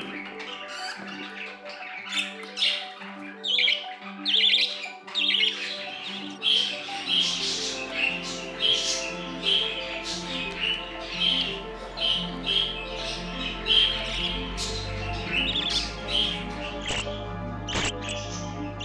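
Budgerigar chicks chirping in short, quick calls repeated about twice a second, over background music.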